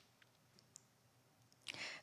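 Near silence: room tone in a pause between spoken sentences, with a couple of faint, isolated clicks.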